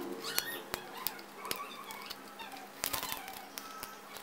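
Small flush cutters snipping the excess copper leads of LEDs and resistors on a dot PCB: several sharp, irregularly spaced clicks over faint handling rustle.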